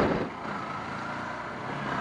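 A Yamaha R15 motorcycle being ridden at a steady pace: an even rush of wind and road noise.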